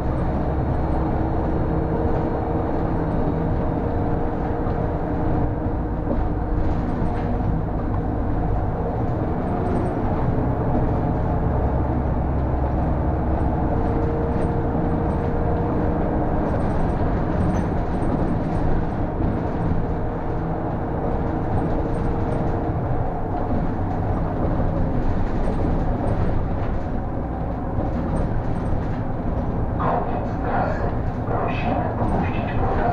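City bus driving along a road, heard from inside the driver's cab: a steady engine and drivetrain hum with tyre and road noise. A faint whine comes and goes several times.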